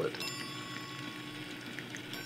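Woodstock Water Bell Fountain running: water bubbling and trickling in the copper bowl while the floating brass bells knock against the fixed bells. One strike about a quarter second in leaves a high bell tone ringing on.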